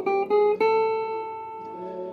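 Clean electric guitar playing a requinto lead line: three quick plucked notes, each a little higher in pitch, the last held and ringing out as it fades. A quieter backing track plays underneath.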